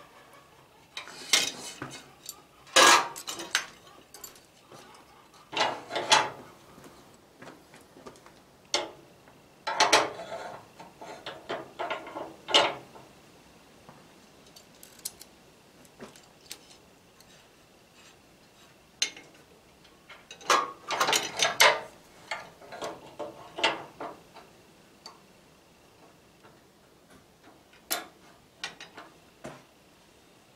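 Steel parking-brake linkage parts (cable hardware and a lever bracket) clinking and rattling as they are handled and fitted to the frame, in scattered clusters of sharp metallic clicks with quieter gaps between.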